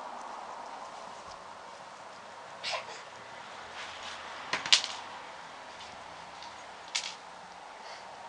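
Quiet room tone with a steady hiss, broken by three brief handling noises from hands massaging a finger, the sharpest about halfway through.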